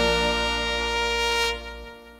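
A live marimba orchestra's horn section holds a long final chord over a deep bass. It cuts off about one and a half seconds in and fades away, ending the piece.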